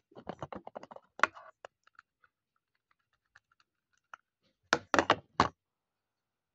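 Plastic clicks and knocks from a clear storage box and skincare bottles being handled: a quick run of taps at first, a few faint ticks, then about four louder knocks in quick succession near the end.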